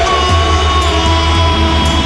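Live rock band playing loudly: drum kit with cymbal crashes about a second in and near the end, over sustained bass and guitar notes.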